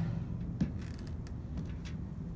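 Steady low rumble of outdoor background noise, with a short faint knock about half a second in and a fainter tick near the end.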